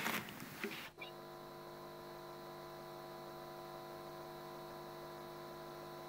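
Faint, steady electrical hum with a buzzy stack of overtones on the audio feed, starting abruptly about a second in after a brief dropout, as a remote call line is being connected.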